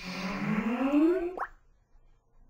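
Skype's sign-in sound: one electronic tone rising in pitch for about a second and a half, ending with a quick upward blip, as the program finishes starting up and logs in.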